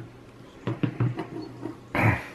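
Printed circuit boards being handled and set down on a wooden tabletop: a few sharp knocks and softer taps, with a louder knock as a board is put down near the end.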